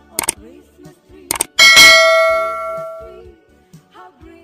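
Subscribe-button sound effect: two quick mouse-click sounds, then a bright bell ding that rings and fades over about a second and a half. Faint background music plays underneath.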